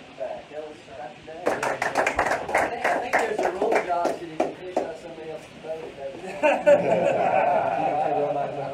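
A small group clapping, starting about a second and a half in and lasting roughly three seconds, with voices under it; louder voices follow near the end.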